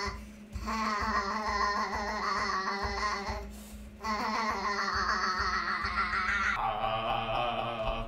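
A man's voice holding long, open-mouthed 'uhh' tones from the belly, two of nearly three seconds each with a short breath gap between and a softer one near the end. The pitch wobbles as he bounces on his feet, in a vocal exercise for a deeper voice.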